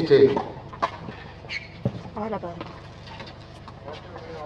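Mostly speech: a man's voice protesting a line call, loudest right at the start, with two short sharp knocks, one about a second in and one near the middle.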